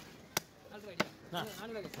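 A heavy fish-cutting knife chopping through a cobia onto a wooden log block: two sharp chops a little over half a second apart. A man starts talking after them.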